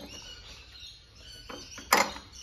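Quiet handling of a spark plug on a Victa two-stroke mower engine, then two sharp metal clinks near the end, the second louder, as a spark plug spanner is fitted onto the plug.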